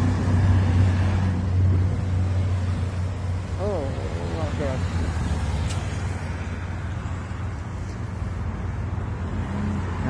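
Road traffic at a city intersection: vehicle engines and tyres making a steady low rumble, loudest in the first couple of seconds as a small box truck passes close by, then easing off as cars cross at a distance.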